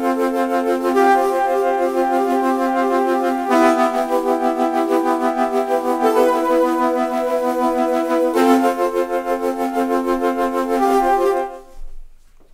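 Teenage Engineering OP-1 synthesizer playing a pad preset: held chords sustained for several seconds each. The chord changes twice and the sound fades out near the end.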